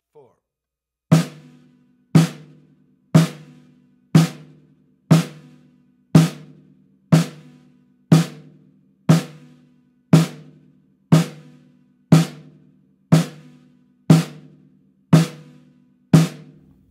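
Snare drum played with sticks in steady quarter notes, about one stroke a second, fifteen even strokes with hands alternating right and left. Each stroke has a short pitched ring.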